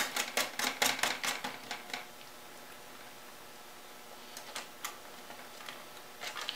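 Light, quick clicking of a CPU cooler's metal mounting hardware as its thumb screws are started by hand onto the backplate studs: a run of clicks for about two seconds, then a few more clicks a little past halfway.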